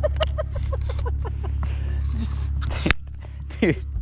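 Men laughing while a baitcasting reel winds in a small fish, over a steady low rumble. There is one sharp click a little before three seconds in.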